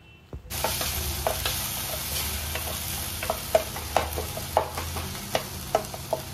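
Tomato and onion masala sizzling as it fries in an enamel pot, stirred with a wooden spatula that scrapes and knocks irregularly against the pot. The sizzle starts abruptly about half a second in.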